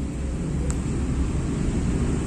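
Steady low rumble of outdoor background noise, with one faint click a little before the middle.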